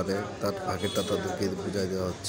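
A voice singing a short phrase over and over above a steady low drone, which stops near the end.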